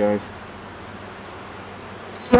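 Honeybees buzzing steadily in a low, even hum around an opened hive as a frame thick with bees is lifted out.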